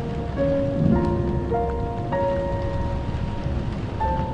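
Steady rain falling, with a slow piano melody of sustained notes played over it.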